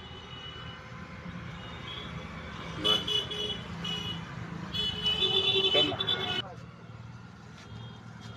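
Street traffic with vehicle horns honking. There are short toots about three and four seconds in, then a longer, louder horn that cuts off abruptly about six and a half seconds in, all over a steady low rumble of engines.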